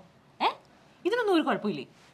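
Speech only: a short vocal sound about half a second in, then a brief spoken phrase.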